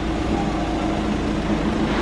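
Citroën car engine idling, a steady low hum with the enclosed sound of an underground car park around it.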